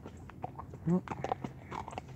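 Horse's hooves stepping on a wet gravel road, a scattering of short, irregular crunching steps. A brief voice-like sound about a second in.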